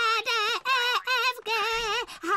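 A young girl's voice singing the alphabet in Czech, one short held note per letter, about three letters a second.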